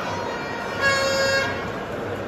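A single steady horn toot, one held note about half a second long, over the background din of a crowd in a hall.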